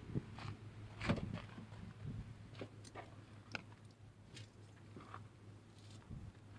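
Faint rustling and scattered small clicks and knocks from a camera being handled and moved, over a steady low hum.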